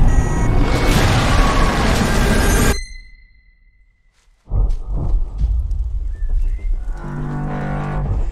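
Film-trailer sound design and score: a loud, noisy blast with a deep rumble that cuts off abruptly about three seconds in. A brief lull follows, holding a thin high ringing tone. Then low rumbling music returns, with a held chord near the end.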